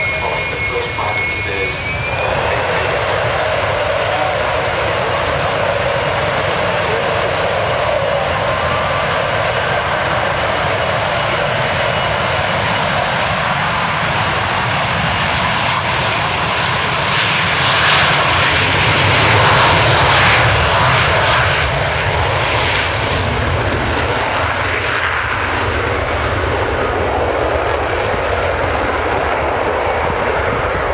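RAF Nimrod's four Rolls-Royce Spey turbofans at takeoff power on the takeoff run. A high whine rises briefly at the start, then comes steady loud jet noise that grows loudest and harshest about two-thirds of the way in as the aircraft passes, and eases off near the end as it lifts away.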